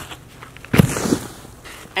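A snowboarder coming down hard in snow after a jump: a sudden thud and crunch of board and body hitting the snow about three quarters of a second in, with a smaller scuff just after. It is a failed landing that leaves a binding broken.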